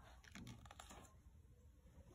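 Near silence, with a few faint clicks and rustles from the pages of an open picture book being handled after a page turn.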